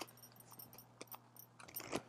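A deck of oracle cards being shuffled by hand: faint, scattered clicks and light crisp ticks of the card edges.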